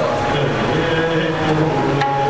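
Harmonium playing sustained reedy notes, with a man's voice singing kirtan over it.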